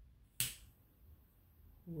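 Butane torch lighter clicked once, about half a second in: a sharp ignition click, then the faint steady hiss of its jet flame.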